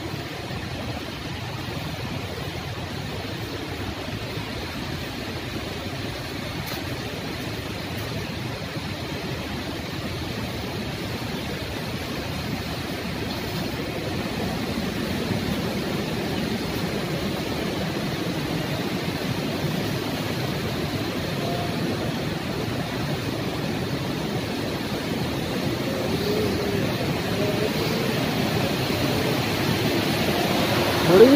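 Steady rushing of a fast mountain river, growing gradually louder.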